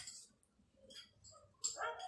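A dog whimpering briefly during a mostly quiet pause, the clearest whimper just before the end.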